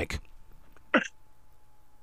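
A single brief throat sound from a person, a short catch about a second in, in an otherwise quiet pause. A faint steady tone sounds underneath.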